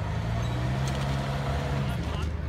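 Jeep Renegade Trailhawk's four-cylinder engine running at steady low revs as the SUV crawls over concrete Jersey barriers. It is a steady low hum that eases off just before the end.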